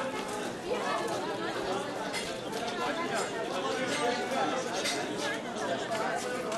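Chatter of a market crowd: many voices talking over one another at a steady level, with no single voice clear.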